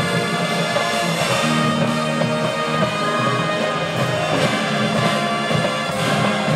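High school marching band playing its field show: sustained wind and brass chords with front-ensemble percussion, continuous and loud.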